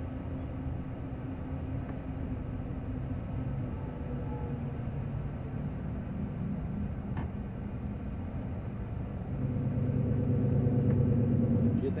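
Engine and road noise of a semi-trailer truck under way, heard from inside the cab: a steady low drone with a few held low engine tones. It grows louder about three-quarters of the way through.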